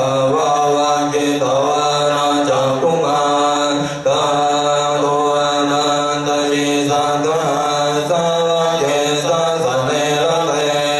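Buddhist chant recited in unison by a group of voices, steady and continuous, with a brief breath pause about four seconds in.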